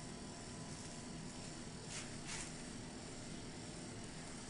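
Quiet room tone with two soft, brief scrapes about halfway through, from a metal spoon spreading cream cheese over a baked pie crust.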